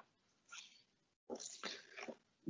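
Near silence in a pause between sentences, with a faint intake of breath about a second and a half in.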